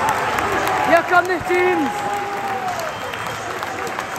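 Football stadium crowd clapping and cheering as the teams walk out onto the pitch, with individual voices calling out over the applause, one call held for over a second.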